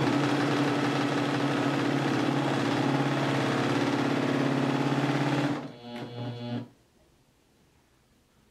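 Serger (overlock machine) running at a steady speed with a constant hum, stitching and trimming a raw fabric edge. Its sound drops lower near six seconds in and stops about a second later.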